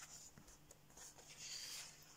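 Faint rustling of thick paper as coloring-book pages are turned by hand, soft swishes of the page sliding over the page beneath, the longest in the second half.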